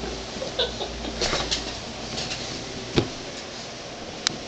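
Faint rustling and small bumps of a toddler clambering up onto a fabric couch over a steady room hum, with a few brief soft squeaky sounds in the first second and a half and one sharp knock about three seconds in.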